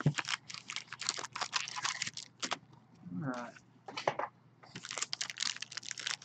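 Clear plastic shrink wrap and a card-pack wrapper crinkling and crackling as they are pulled and torn open by hand, in quick irregular bursts.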